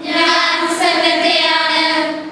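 A group of nuns singing together in unison, holding a sung phrase.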